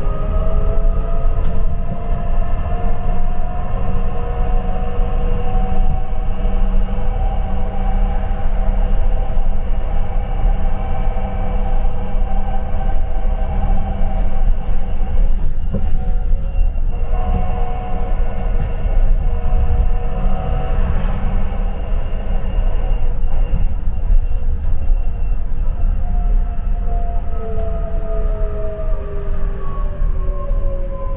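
Inside a shuttle bus on the move: a steady low road and engine rumble with a whining drivetrain tone that rises as the bus speeds up, holds while it cruises and falls again as it slows near the end.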